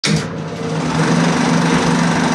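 Intro logo sound effect: a loud, steady rush of noise over a low hum, starting suddenly.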